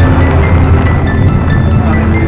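Loud background music with a dense, rumbling low end and a steady ticking beat.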